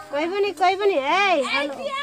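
High-pitched voices, children's voices by the tags, sounding in smooth phrases that rise and fall in pitch.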